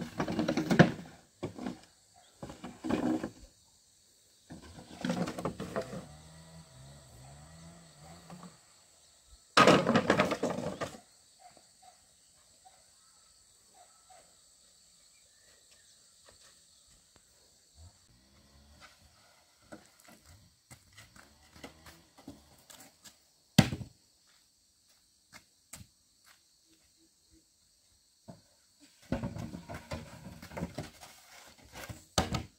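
Long green bamboo poles sliding down a dirt bank and knocking together in several bursts, the loudest about ten seconds in. There is a single sharp knock about two-thirds of the way through, then more scraping and clatter near the end.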